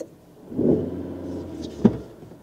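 A Suzuki car's engine revving up from idle about half a second in and holding at raised revs, with a sharp click just before the end.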